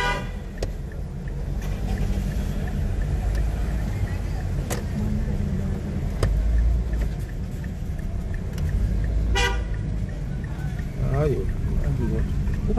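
Steady low rumble of a car driving, heard from inside the cabin, with two short car-horn toots, one right at the start and one about nine seconds in.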